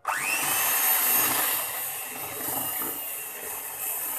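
Electric hand mixer switched on, its motor spinning up with a short rising whine and then running steadily as the beaters whip buttercream in a plastic bowl.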